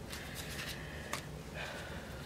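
Faint handling noises from gloved hands and paper, a light rustle with one soft click about a second in.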